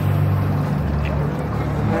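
A steady, low engine-like hum over a background of outdoor noise.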